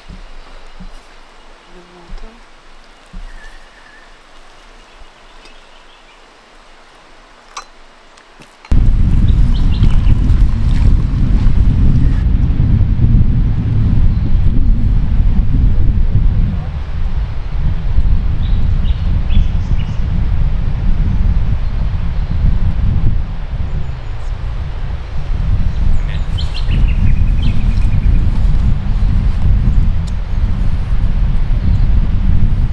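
A few light clicks, then about nine seconds in a loud, steady wind rumble on the microphone sets in abruptly and runs on, with birds chirping over it now and then.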